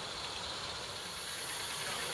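Hiss of steam from a 16mm-scale live-steam model locomotive, growing louder and sharper about a second in.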